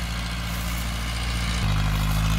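Ford tractor's diesel engine running steadily under load while pulling a seven-disc plough, a low even hum that steps up in level about one and a half seconds in.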